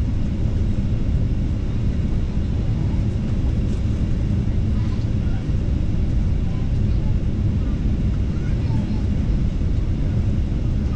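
Passenger airliner cabin noise: a steady low rumble of engines and airflow heard from inside the cabin, with faint voices in the background.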